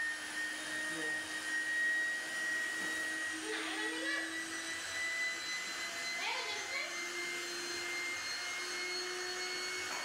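Electric air pump running steadily as it blows air into an inflatable pool, a continuous whine that creeps slowly up in pitch.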